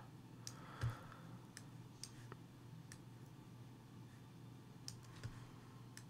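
Faint computer mouse clicks, about half a dozen spread out, with a soft low thump about a second in.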